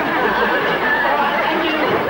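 Many voices talking over one another: a steady crowd chatter.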